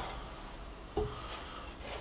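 A single light knock about a second in, from a plastic measuring jug being handled on a bench scale, over a low steady background hum.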